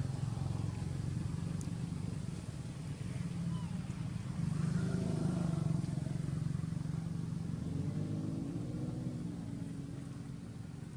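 A steady low engine rumble, like a motor vehicle running.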